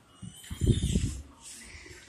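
Handling noise from a hand-held phone being swung about: low rumbling bumps about half a second in, then a faint hiss.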